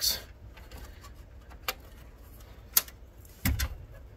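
Light handling sounds of a graphics card being lowered into a motherboard's PCIe slot: two small sharp ticks, then a dull knock about three and a half seconds in as the card meets the slot.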